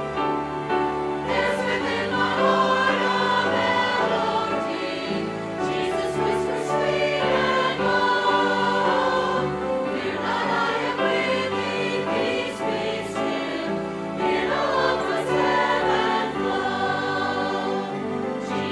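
Mixed church choir of men and women singing together.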